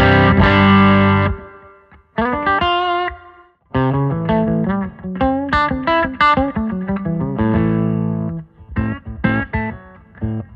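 Electric guitar, a sunburst Les Paul, played through a Blackstar St. James 50-watt valve amp head: big sustained chords ring out and fade over the first second and a half, then single-note licks, a held chord, and short stabbed notes near the end.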